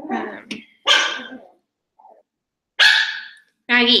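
Pet dog barking, a few short loud barks.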